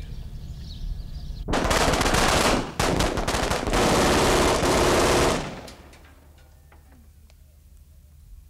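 Rapid automatic gunfire in two long bursts, staged for a film scene. It starts about a second and a half in, breaks briefly, resumes, and cuts off a little past halfway, leaving a fading echo.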